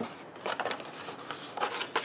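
Card stock being folded and pressed flat by hand along its score lines, with several short rustles and scrapes of card against the cutting mat.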